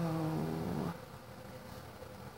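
A woman's voice holding a drawn-out, wordless hum that rises slightly and stops about a second in, followed by faint room tone with a thin steady hum.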